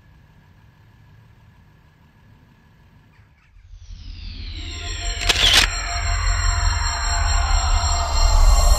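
Faint background hiss, then an outro music sting: deep bass swells in just after halfway, with several falling synth sweeps and one loud crash-like hit about two-thirds of the way through.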